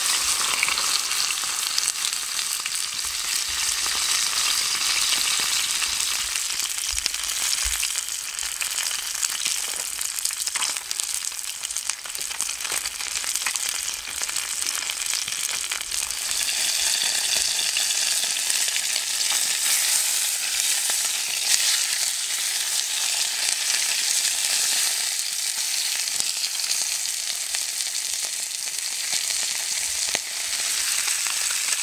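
Whole trout frying in a hot stainless steel pan over a campfire: a steady, loud sizzle with a few faint crackles.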